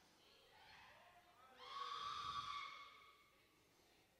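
Near silence in a large room, broken by one faint, brief vocal sound about a second and a half in, lasting just over a second.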